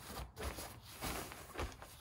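Quilted polyester cargo liner rustling and brushing as hands smooth it flat, a few short swishes.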